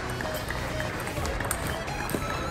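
A table tennis rally: the ball is struck by the rackets twice, two sharp clicks about a second and a half apart, over a steady background of voices.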